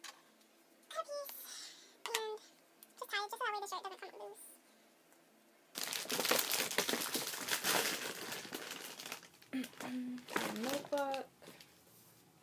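Loud crinkling of gift wrapping as a cellophane-wrapped mug gift is pushed down into a paper gift bag, a dense rustle lasting about three and a half seconds that starts about halfway through.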